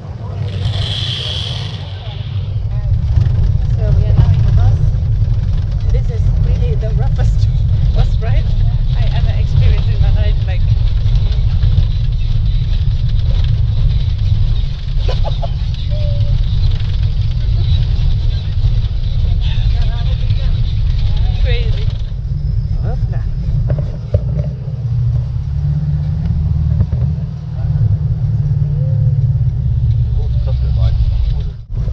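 Tour bus engine and road rumble heard from inside the passenger cabin, steady and loud, with people talking faintly. It opens with about two seconds of hissing water spraying from a leaking hose fitting.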